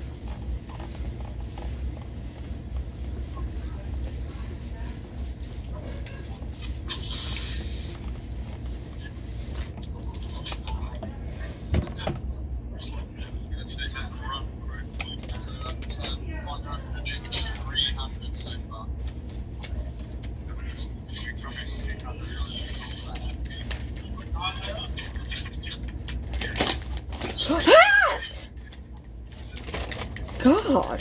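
A clothes iron and paper being handled: scattered light scrapes, clicks and rustles over a steady low hum, with a short rising squeal near the end as the loudest sound.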